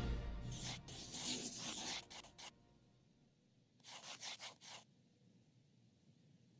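The tail of the logo fanfare dies away. A pencil then scratches on paper in two spells of quick strokes: about two seconds of them starting half a second in, and a shorter spell about four seconds in.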